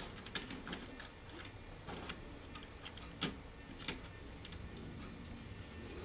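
Faint, irregular small clicks of a plastic N scale caboose being handled by fingers and set down on the model track.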